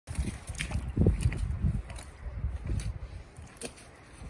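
Small boots squelching and shuffling in wet mud and slush, with irregular low rumbling and a few brief sharp clicks.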